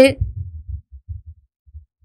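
A woman's narrating voice trails off as it begins, leaving a pause with only faint, irregular low thuds that die away.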